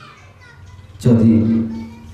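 A man's voice over a microphone: after a short pause with faint background voices, he speaks a single held, steady-pitched syllable about a second in, which then fades.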